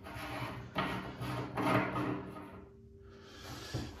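Brass ceramic-disc tap cartridge being unscrewed by hand from a bath pillar tap, its threads scraping in three twists, then a small click near the end.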